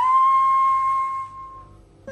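A Carnatic flute holding one long, steady note that fades out about a second and a half in.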